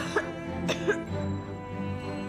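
A woman's short muffled coughs behind her hand, two pairs in the first second, as she gags with nausea. Sustained string background music plays under them.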